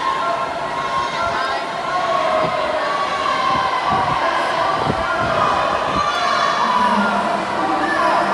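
Crowd of spectators in an indoor pool cheering and shouting, cheering on swimmers racing, with many voices overlapping in sustained yells.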